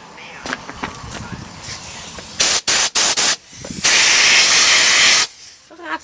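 Aerosol can of Fluid Film rust-inhibitor spray hissing in bursts: three short squirts, then one longer spray of about a second and a half.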